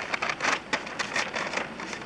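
Irregular crackling rustles, a dozen or so short sharp ones over two seconds, from someone moving about and handling a cardboard box.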